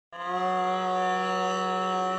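A male Hindustani classical vocalist singing one long held note on an open vowel, steady in pitch, starting just after the beginning.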